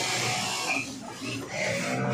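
Industrial sewing machines running in a busy garment workshop: a steady pitched hum that dips briefly about halfway through, then picks up again.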